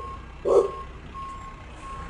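A truck's reversing beeper sounding a single high beep about every three-quarters of a second, about three beeps. Near the start there are two short, loud bursts of noise that are louder than the beeps.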